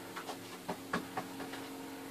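A few light knocks and clatters from fitting pieces into a deep top-opening fridge, over a faint steady hum.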